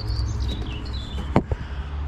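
A small bird chirps a short run of high notes stepping downward, over a steady low rumble. A single sharp click comes about a second and a half in.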